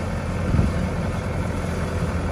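Mustang 2105 skid-steer loader's engine idling, a steady low rumble.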